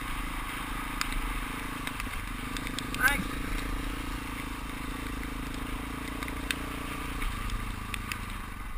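Dual-sport motorcycle engine running steadily while riding a gravel road, with occasional sharp ticks of stones. Near the end the engine note drops lower as the bike slows or changes gear.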